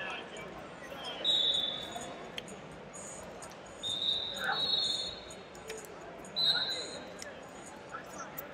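Wrestling shoes squeaking on the mat as the wrestlers move and hand-fight: three drawn-out, high squeaks, about a second in, around four seconds in and again near the end, over low arena chatter.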